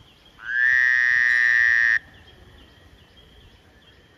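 A loud, buzzy animal call that rises in pitch as it starts, holds steady for about a second and a half and cuts off abruptly, over faint, regularly repeated chirps.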